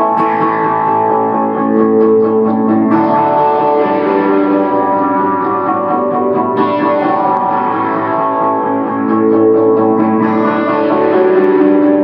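Ibanez CMM1 electric guitar played through a Boss Katana 50 amp with delay and looping: sustained, layered notes ringing over a repeating loop, with a new phrase coming in every three to four seconds.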